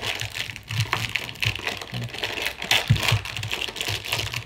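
Clear plastic wrapping around a speedcube crinkling as it is handled and opened, with many small irregular clicks and taps from fingers and the plastic cube.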